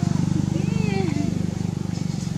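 A monkey's rising-then-falling crying call, with a second cry about half a second in lasting near a second, over the steady low drone of a running motor engine.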